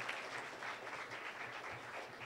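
An audience applauding, the clapping slowly dying away.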